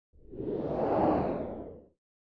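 A whoosh sound effect accompanying an animated logo reveal: a swell of noise that builds for about a second and then fades away just before the logo settles.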